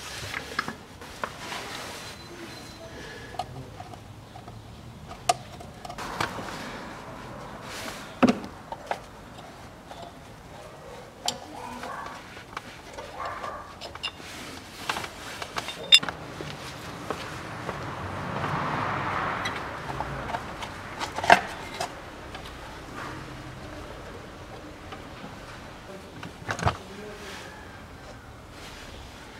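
Scattered clicks, taps and a few sharper knocks of hands and tools working on the front of the engine, as the plastic lower timing-belt cover is unfastened and pulled off.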